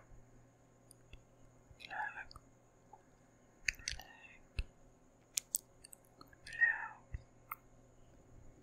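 Close-up whispering into a microphone: two short breathy whispered bursts, about two seconds in and again near seven seconds, with a handful of sharp wet mouth clicks scattered between them.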